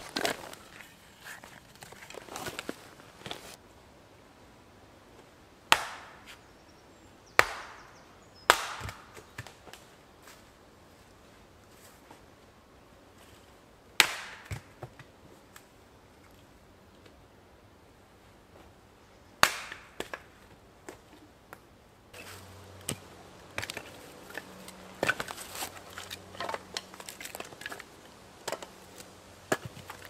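An axe splitting firewood on a wooden chopping block: about six sharp chops a few seconds apart, each with the crack of the log splitting. Near the end come quicker, lighter knocks and clatter of wood pieces.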